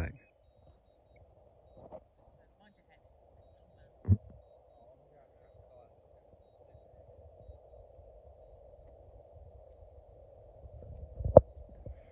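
Faint, steady buzz of a quadcopter drone flying back, growing slightly louder in the second half. A knock about four seconds in and a louder one near the end.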